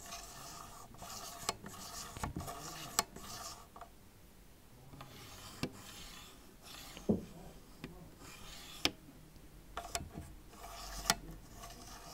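Faders of Audio Imperia FVDE MKI and MKII MIDI CC controllers being slid up and down by hand, giving a faint sliding noise with several sharp clicks. This is a comparison of fader noise between the two units: the MKII's faders are smoother and feel more solid, and the MKI's are a bit looser.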